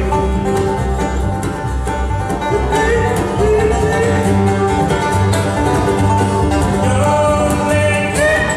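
Bluegrass band playing live: acoustic guitar, upright bass, banjo and fiddle, with the fiddle's notes gliding over a steady plucked bass pulse.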